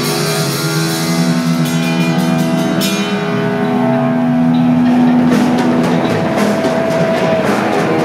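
A live thrash metal band plays distorted electric guitars, bass guitar and drum kit. Chords are held over repeated cymbal and drum hits, which drop out briefly in the middle and then come back.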